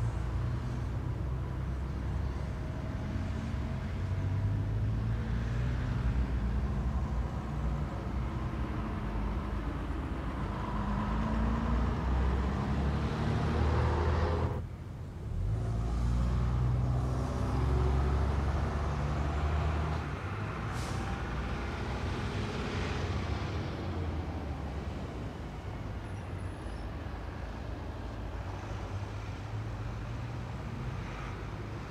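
Street traffic: diesel engines of double-decker buses and cars running past, a steady low rumble. The rumble dips briefly about halfway through, and a short high hiss comes about two-thirds of the way in.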